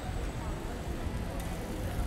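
Street ambience: indistinct voices of passers-by over a steady low rumble of city traffic.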